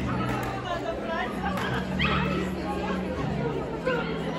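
Chatter of many people in a large hall, with a dog barking.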